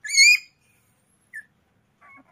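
Puppy giving one sharp, high-pitched yelp, then a short faint squeak about a second later, as a tick is pulled from its ear with tweezers.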